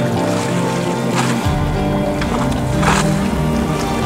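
Background music of held tones, with a deeper bass layer coming in about one and a half seconds in.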